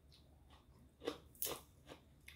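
Crisp crunching of fresh raw greens at close range: three sharp crunches about a second in, the first two loudest.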